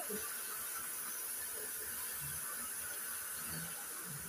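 Steady low hiss of room tone, with no distinct sound standing out.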